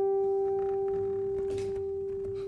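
A single acoustic guitar note left ringing, an almost pure tone that slowly fades.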